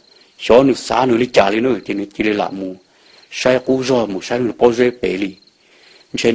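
A man narrating a story in Hmong, in two phrases with short pauses between them.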